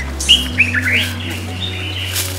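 A bird chirping in a quick run of short, rising, high notes, over low steady sustained tones.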